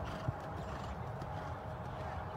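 Horse cantering on sand arena footing: dull hoofbeats, with one sharper thud about a quarter second in.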